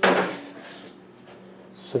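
A single sharp knock or clank right at the start, ringing briefly and dying away within about half a second, then a low steady hum until a man's voice begins at the very end.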